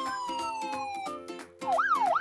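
A police car siren's slow wail falling in pitch and fading out about a second in, over background music. Near the end a faster siren starts, sweeping up and down about three times a second, as the fire engine arrives.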